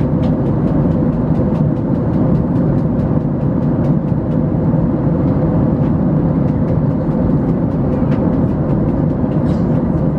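Steady roar of an airliner's jet engines and rushing air heard inside the cabin during the climb, with a steady hum running through it and faint light ticks.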